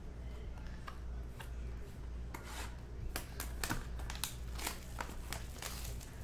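Plastic wrapping on a box of trading cards crinkling and tearing as the box is unwrapped and opened, a run of sharp crackles through the middle.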